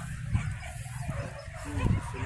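Hunting dog yelping and whimpering, with a short yelp near the end, over a steady low rumble.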